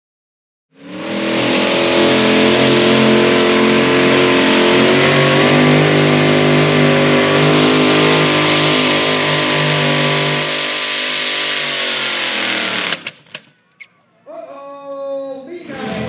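Supercharged Gen III Hemi V8 of a modified mini pulling tractor running hard at high, steady revs. It starts abruptly about a second in and cuts off about 13 s in.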